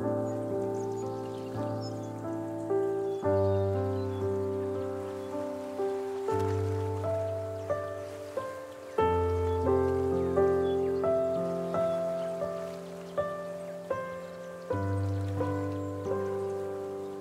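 Solo piano playing slowly and softly: sustained chords and melody notes over low bass notes, a new bass note struck every few seconds and each chord left to die away.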